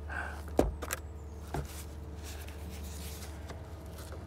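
Sharp plastic clicks and knocks from a car sun visor's pivot mount being pulled down and handled free of the headliner: one loud snap about half a second in, then two lighter knocks within the next second. A steady low hum runs underneath.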